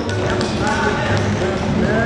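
A voice chanting in a steady rhythm over low thuds that come about twice a second, with a few sharp taps.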